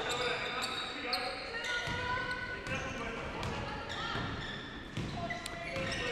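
Game sound of a basketball game in a large gym: a basketball bouncing on the hardwood court, with faint distant voices from players and spectators.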